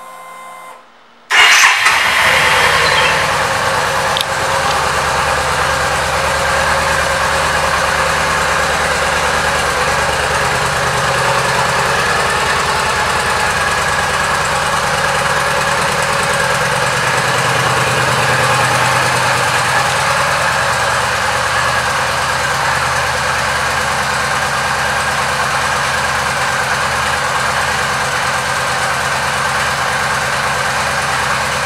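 A 2012 Yamaha V Star 950's air-cooled V-twin starting about a second and a half in, catching at once and running a little louder for a moment before settling into a steady idle.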